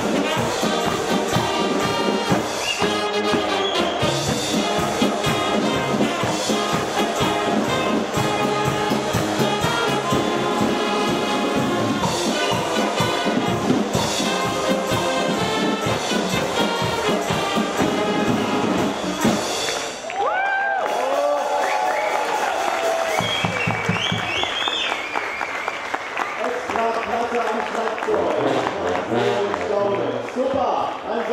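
Brass band playing loudly with a drum kit driving a fast beat of drum and cymbal strokes. About two-thirds of the way through the music breaks off, and voices and shouting follow.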